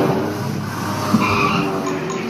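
Soundtrack of an indoor boat dark ride playing through its speakers: sustained musical tones mixed with sound effects, no speech.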